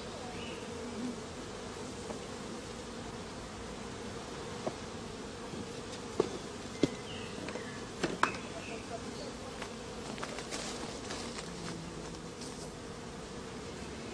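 A mass of honey bees buzzing in a steady hum, with a few short clicks in the middle.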